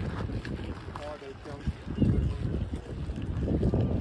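Wind buffeting the microphone in uneven low gusts, with people's voices faintly heard.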